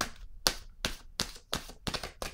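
A deck of tarot cards being shuffled by hand: a crisp slap of cards about two and a half times a second, six in all.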